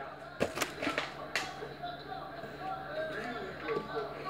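A few light knocks and clicks of a plastic water bottle being picked up and handled on a countertop, the clearest about a second and a half in. A faint voice murmurs behind.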